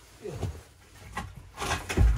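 A metal pipe scraping and knocking against wooden boards on the floor as it is worked under the edge of an old refrigerator, with a sharp knock about a second in and louder scraping near the end.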